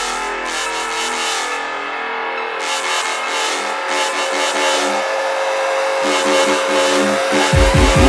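Electronic dubstep music in a build-up: synth chords with the bass pulled out, a rising synth sweep climbing through the second half as the loudness grows, and heavy bass hits returning near the end.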